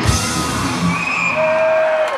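A rock band with electric guitar and drums playing live. The drum hits stop shortly after the start, and a single held note rings on through the second half.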